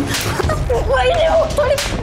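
Two sharp slaps, one just after the start and one near the end, with a woman crying out between them.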